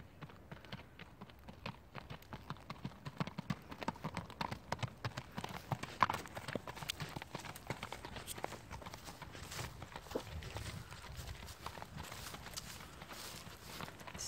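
Hoofbeats of a Spotted Saddle Horse, a gaited horse, moving along a gravel lane under a rider: a steady, quick run of clip-clopping strikes.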